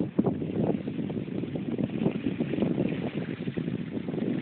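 Wind buffeting the microphone in uneven gusts, a continuous noisy rumble with no engine tone.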